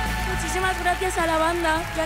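The band's last sustained chord ringing out while a studio audience cheers and applauds, with voices shouting over it.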